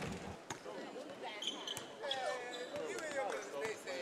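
Indistinct voices of players and spectators in a gymnasium, with a few sharp knocks of a basketball bouncing on the hardwood court.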